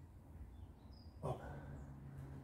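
A man's short, forced exhale voiced as "oh" at the top of a one-arm kettlebell swing, about a second in. A faint, steady low hum follows it.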